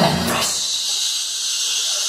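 Hip hop dance music cuts out about half a second in and gives way to a steady high hiss, a noise effect edited into the performance mix at a break in the routine.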